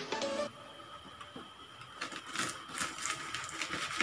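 Background music cuts off half a second in; then, in the last two seconds, a quick run of crackles and clicks from a knife cutting through a crisp, fried lumpia-wrapped cassava turon on a plastic plate.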